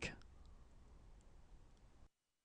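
Near silence: faint room hiss with a few weak clicks, just after a spoken word trails off at the very start.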